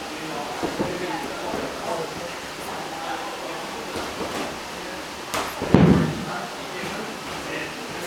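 Indistinct chatter of many people training in a karate class, with a short knock a little after five seconds in and then a loud, heavy thump just after it.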